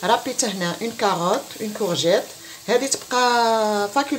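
A person talking throughout, drawing out one long held sound near the end. Under the voice, grated vegetables sizzle faintly as they fry in a pan and are stirred with a wooden spoon.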